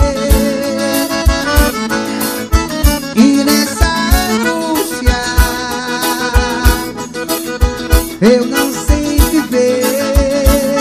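Forró music: an accordion melody over a steady bass-drum beat.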